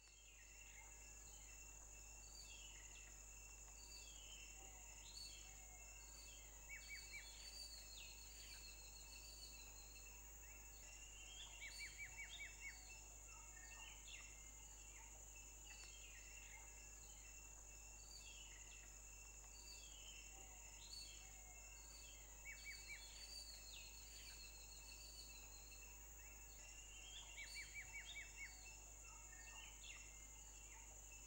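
Faint woodland ambience: birds chirping over a steady high hiss, with a short burst of quick trilled chirps returning about every five seconds.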